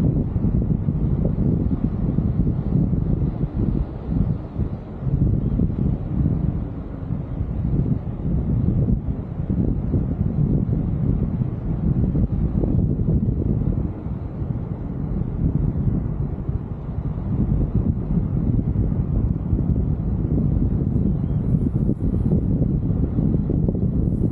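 Wind buffeting an outdoor microphone: a steady low rumble that rises and falls in gusts.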